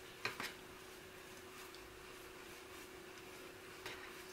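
Faint clicking and rubbing of bamboo knitting needles working yarn into knit stitches: two light clicks just after the start and another near the end, over a faint steady hum.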